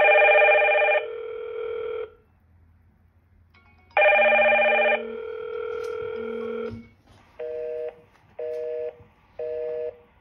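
Hikvision video intercom ringing for an incoming door-station call: two rings about four seconds apart, each a chord of several tones lasting about two seconds. Near the end come three short beeps about a second apart as the call ends.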